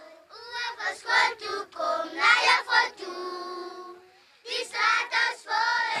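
Children singing, with held notes and a brief pause about four seconds in.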